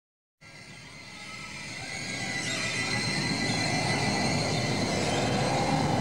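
Electronic music intro: a dense, noisy synthesizer drone with steady high tones, swelling in from silence over about four seconds.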